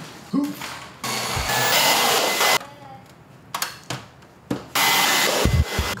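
A small electric motor driving air, a loud steady hiss with a faint high whine, runs in two short bursts, the first about a second and a half long and the second about a second, each starting and stopping abruptly. A low thump comes near the end.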